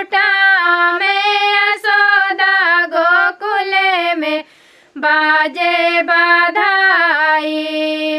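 Two women singing a dadar, a Vindhya folk song, together in one melodic line with no instruments, their long held notes bending between pitches. The singing breaks off for a short breath about halfway, then carries on.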